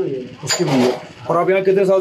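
A man talking in Hindi, with drawn-out syllables at a steady pitch; only speech.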